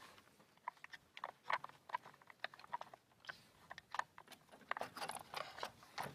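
Faint, irregular small clicks and rattles of a Gewehr 43 rifle's sling hardware as the sling is loosened and the rifle is handled.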